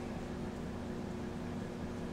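Steady low room hum with faint background hiss. The threads being unscrewed make no audible sound.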